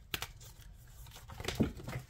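A tarot deck being shuffled by hand: short papery flicks and snaps of the card stock, a couple of crisp clicks at first and a busier flurry late on, as a card flies out of the deck.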